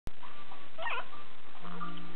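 A baby's short, faint, high-pitched squeal about a second in, over a steady background hiss, with a few faint held tones near the end.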